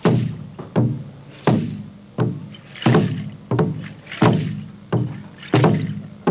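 A large rope-laced ceremonial drum beaten in a steady slow beat, about one stroke every 0.7 seconds with an occasional quick double stroke, each stroke ringing low as it fades.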